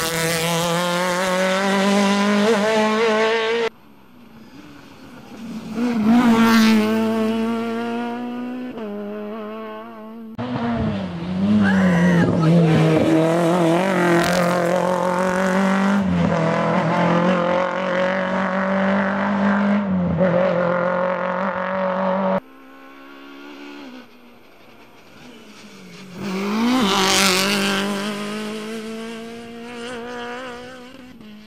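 Rally car engines at full throttle passing at speed, revving up through the gears with a dip in pitch at each shift. There are several separate passes with abrupt cuts between them, two of them swelling loud as the car goes by, about 6 and 27 seconds in.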